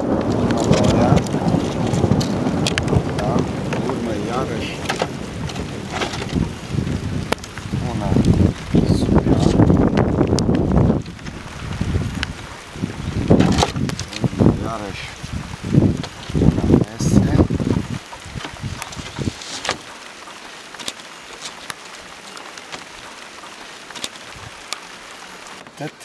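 Wind buffeting the microphone in a heavy low rumble, over the light clacks and taps of split spruce shakes being handled and set in place on a roof by hand. The rumble drops away about 18 seconds in, leaving quieter taps of wood on wood.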